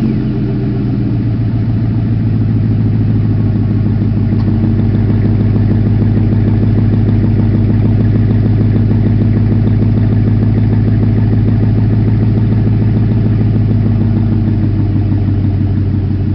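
A 2006 Ford F-150 idling steadily just after a warm start, through an exhaust with the mufflers removed (Y-pipe only) and 5-inch tips. The idle is loud, low-pitched and even.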